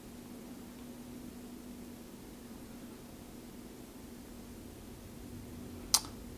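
Quiet room tone: a steady low hum under a faint hiss, with a single sharp click just before the end.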